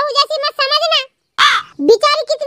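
Pitched-up cartoon character voices speaking quickly, broken about halfway through by a short, harsh cry lasting about a third of a second, after which the talking resumes.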